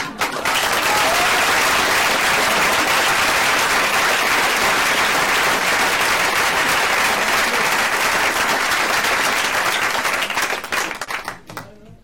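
Live audience applauding, a dense clapping that starts at once, holds steady for about ten seconds and dies away near the end.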